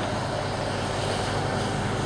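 Steady outdoor background noise, an even hiss-like rumble with a low hum underneath and no distinct events.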